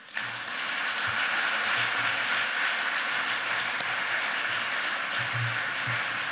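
A large audience applauding at the close of a speech, breaking out all at once and keeping up steadily.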